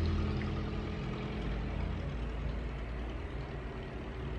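A low, steady rumble with a hum, like a motor running.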